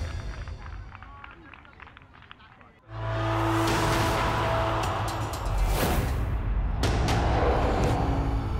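Background music fading out, then about three seconds in a sudden loud whoosh over a deep bass tone opens a logo sting of swelling sound effects and music, with sharp hits near the end.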